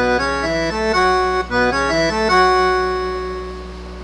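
Roland V-Accordion, a digital piano accordion, playing the closing phrase of a forró solo: a quick run of single melody notes, then one long held note that fades away.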